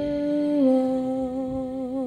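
A voice singing a hymn, holding long sustained notes: the pitch steps down a little about half a second in, and the held note wavers with vibrato near the end.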